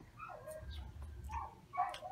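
A dog whimpering faintly in the background, a few short high cries, with a faint low rumble about halfway through.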